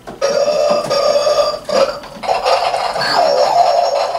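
A rubber squeeze toy squawking with a loud, wavering honk, squeezed twice in two long squawks with a short break in between.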